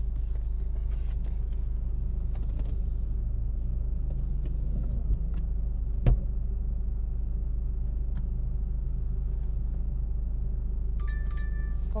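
Steady low rumble inside a parked car's cabin, with faint knocks and one short thump about six seconds in as a man scrubs the windshield from outside. Near the end a phone's repeating alert tone starts up, signalling an incoming DoorDash delivery order.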